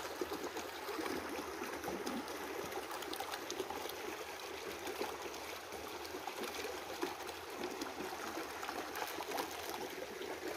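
Shallow rocky creek trickling steadily over stones, with a few faint clicks now and then.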